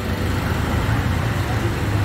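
Steady low rumble of road traffic, with faint voices in the background.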